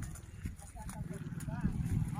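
Faint, high-pitched voices in short rising-and-falling calls, three times, over a steady low rumble.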